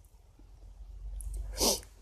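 A man's short, sharp breath about a second and a half in, over a faint low rumble, in a pause between spoken sentences.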